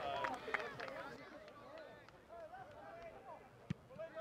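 Faint shouts and calls of players on a football pitch, with a single sharp thud of the ball being kicked near the end.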